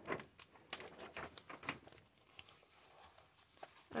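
Faint rustling of a plastic sleeve and light clicks of cardboard beer coasters being pulled out and shuffled by hand, mostly in the first two seconds.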